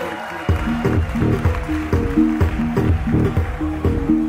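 Hip hop battle music over the venue's sound system changing track: the rapped track drops out, and about half a second in a new instrumental beat starts with a steady kick and a repeating bass riff.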